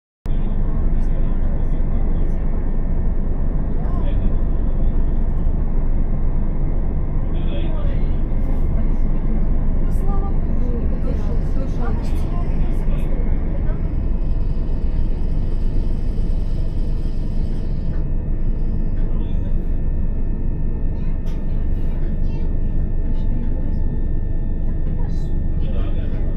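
Steady running noise inside a Class 375 electric multiple unit at speed: a continuous low rumble of wheels on rail and cabin noise. It starts suddenly just after the beginning and holds level throughout.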